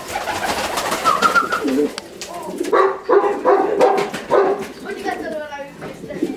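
Domestic pigeons cooing in a loft: a series of short, repeated coos in the middle, with a few sharp clicks and knocks around them.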